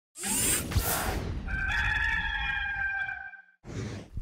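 Rooster crow sound effect in an intro sting: a rush of noise, then a long drawn-out crow whose last note is held for about two seconds, followed by a short rush of noise near the end.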